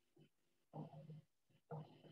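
Near silence, broken twice by a man's faint, low murmuring voice.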